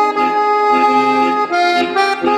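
Paolo Soprani piano accordion playing a tango: held right-hand melody notes and chords over short, evenly beaten bass notes.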